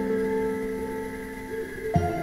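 Background music on a plucked guitar: a held chord slowly dying away, with new notes plucked near the end.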